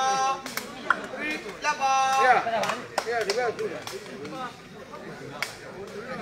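Voices of players and spectators calling out at an outdoor sepak takraw court, including two long drawn-out shouts, with a few sharp single claps or knocks in between.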